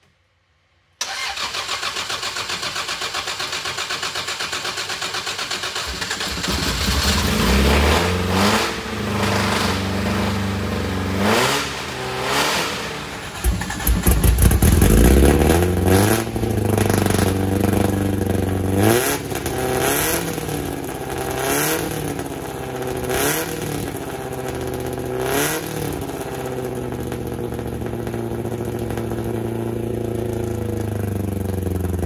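Triumph TR4 race car's four-cylinder engine cranking steadily on a jump start for about five seconds, then catching about six seconds in. It is blipped up and down several times and settles into a steady idle near the end.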